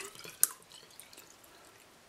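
Water dripping and trickling from a plastic jug dipped into a bucket of water, with one sharp click about half a second in.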